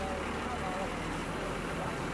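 Longtail boat engine running steadily: a low, even drone, with a few faint short whistling tones over it.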